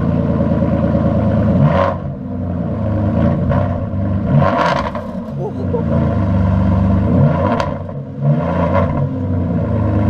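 Aston Martin V12 Vantage S's V12 engine running at low speed while the car manoeuvres, with several short revs that rise and fall in pitch, about two seconds apart.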